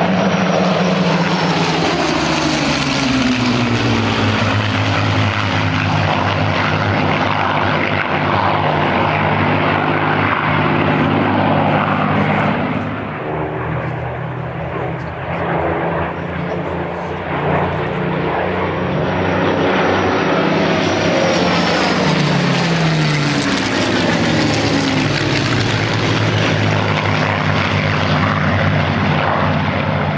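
Four Supermarine Spitfires' Rolls-Royce Merlin V12 piston engines passing overhead in formation, their pitch dropping as they go by in the first few seconds. The sound eases off around the middle, then builds and falls in pitch again as they make another pass.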